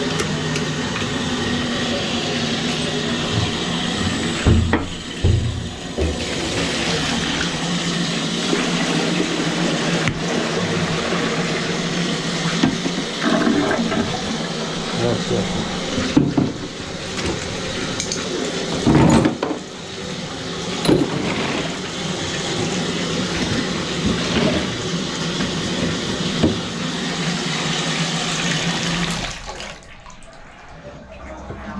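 Water rushing steadily over a constant low motor hum, with a few knocks along the way; it all cuts off just before the end.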